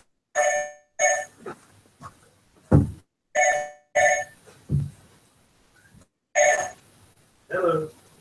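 Telephone ringing in the double-ring pattern: two short electronic rings, then a pause of about two seconds, heard three times.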